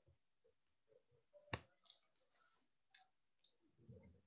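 Near silence, broken by one sharp click about a second and a half in, followed by a few fainter ticks and rustles.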